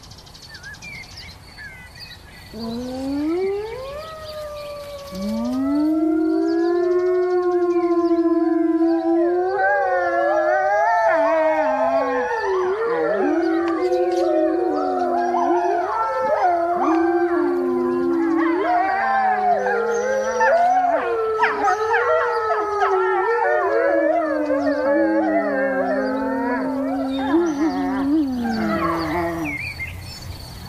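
A grey wolf pack howling: one rising howl about three seconds in, a second soon after, then from about ten seconds many voices join and overlap in a wavering chorus that fades out just before the end. The pack is answering a researcher's imitation howl, a call used to locate packs and count their young.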